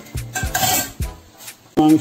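Wooden spatula stirring and scraping thick duck meat bhuna in a nonstick wok, with a few knocks of the spatula against the pan.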